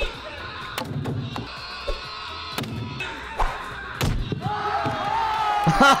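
A recording of a man screaming, played to annoy people: a long, held scream that builds near the end, over background music. Several sharp thuds come earlier.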